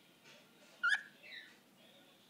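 Cockatiel giving one short, sharp chirp about a second in, followed by a softer falling note.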